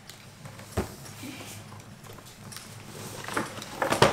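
Quiet handling of a cardboard advent calendar box and a small coffee capsule: one sharp click a little under a second in, then faint rustling and a couple of small knocks near the end.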